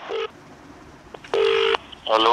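Telephone line tones as a call is placed: a brief steady beep at the start, a faint click about a second in, then a second steady beep lasting under half a second.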